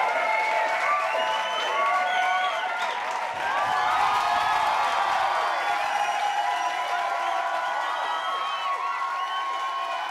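Small live audience, many of them children, clapping and cheering with overlapping excited chatter, easing off slowly.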